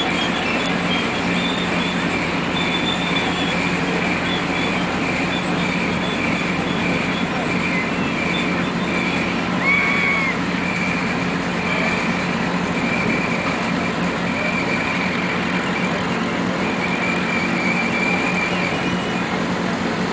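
Marion Model 21 electric shovel's motor-generator set, an electric motor coupled to a generator, running steadily with a continuous hum and a high whine on top. A brief high chirp comes about halfway through.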